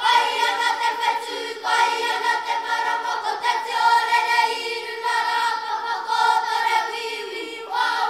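Children's kapa haka group singing a Māori song together in long held notes, with brief breaks about one and a half and three and a half seconds in.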